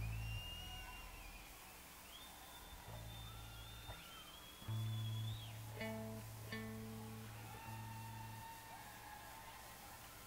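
Electric guitar and bass guitar noodling and tuning between songs: several held bass notes and a few long, bending guitar tones with scattered plucked notes, at a low level.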